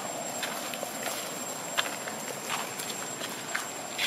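Scattered small crackles and rustles of dry leaf litter as macaques walk over it. A steady outdoor hiss with a thin high whine runs underneath, and a sharper click comes a little under two seconds in.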